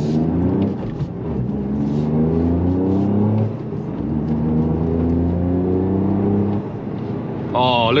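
Toyota GR Yaris's 1.6-litre three-cylinder engine, on its stock tune with the RaceChip switched off, accelerating hard as heard from inside the cabin. Its pitch climbs for about three and a half seconds, drops at an upshift, climbs again, and falls away near the end as the throttle comes off.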